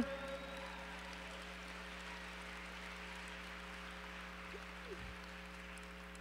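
Faint audience applause: an even wash of clapping with no single claps standing out, over a steady low hum.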